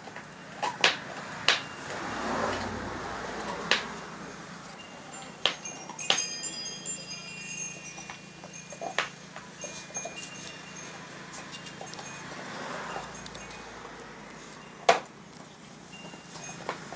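Dogs gnawing raw bones, with sharp cracks and crunches of bone at irregular intervals, the loudest near the start and shortly before the end. Brief high ringing tones sound about six seconds in.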